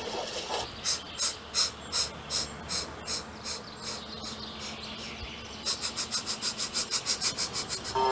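Steam engine puffing sound effect: evenly spaced chuffs at a little under three a second, then, after a short lull, a faster run of about five a second.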